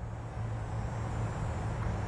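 A steady low rumble, like distant traffic, with a faint hiss over it.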